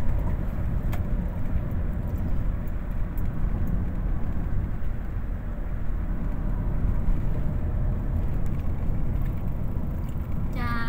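Steady low rumble of a moving vehicle's engine and tyres on a paved road, heard from inside the cab.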